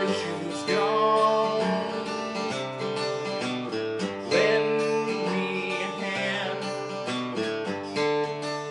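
Acoustic guitar strummed in steady chords while a man sings along, holding one long wavering note about four seconds in.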